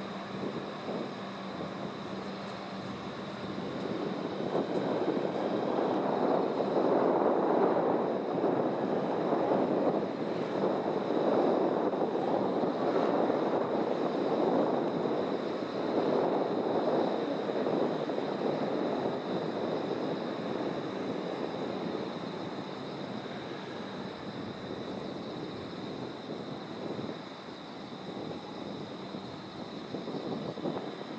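HU300 light-rail tram pulling away, its wheels and traction motors making a steady rumble. The rumble builds over the first several seconds, then slowly fades as the tram moves off into the distance.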